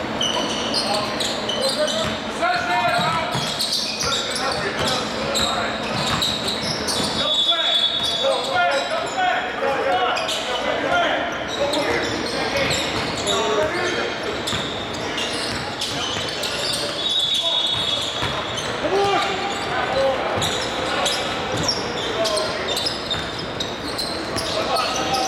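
Basketball game on a hardwood gym floor: the ball bouncing, sneakers giving a couple of brief high squeaks, and players' indistinct calls, all echoing in a large hall.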